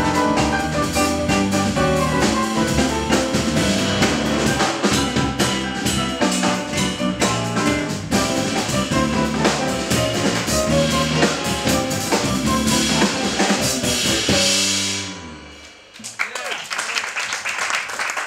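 Live jazz quartet of grand piano, acoustic guitar, bass guitar and drum kit playing the last bars of a tune. About fifteen seconds in they stop on a final chord, which fades out within a second or so. Audience applause follows.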